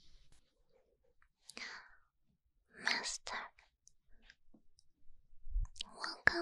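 Soft whispering close to a binaural microphone: two breathy spells, one about a second and a half in and a louder one about three seconds in, with a few small mouth clicks in between.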